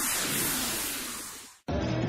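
A broadcast transition sound effect: a burst of hiss-like noise that starts abruptly, fades away over about a second and a half, and cuts off.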